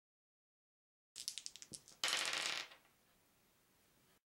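A handful of plastic polyhedral dice clattering on a wooden table: a quick run of sharp clicks, then a dense rattle for about half a second as they tumble and settle.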